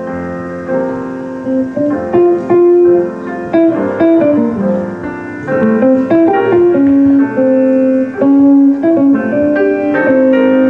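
Live jazz combo of grand piano, upright bass, drums and electric guitar playing an instrumental passage with no vocals, the piano to the fore.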